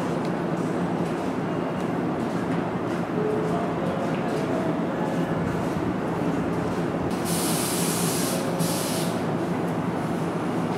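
Hankyu 5100 series electric train standing at a platform, its equipment humming steadily. About seven seconds in, two bursts of compressed-air hiss, the first about a second long, the second shorter.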